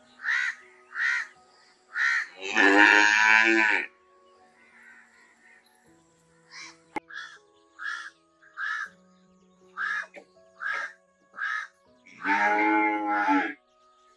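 A cow mooing twice, each moo a long call of just over a second, the first about two and a half seconds in and the second near the end. Between the moos, crows caw in a steady series of short calls, roughly one and a half a second.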